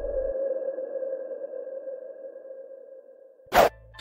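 The ringing tail of a logo intro sound effect: one sustained electronic tone slowly fading out, then a brief whoosh about three and a half seconds in.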